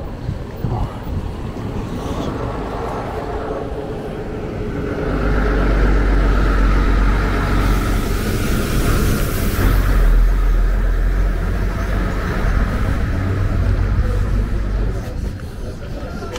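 Road traffic: a passing vehicle's rumble and tyre noise build from about five seconds in, are loudest around nine to ten seconds, and fade away near the end.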